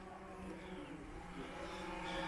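Quadcopter drone hovering nearby, its propellers giving a faint steady hum of several pitches that grows a little louder near the end.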